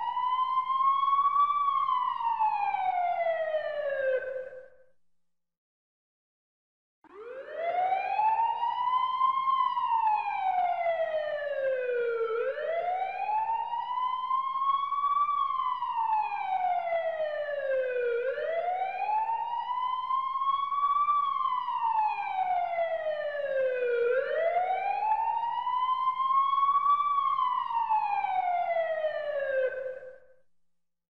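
Emergency-vehicle siren in a slow wail. Each cycle rises over about a second and a half, falls over about four seconds, and repeats about every six seconds. It cuts out abruptly about five seconds in and resumes about two seconds later.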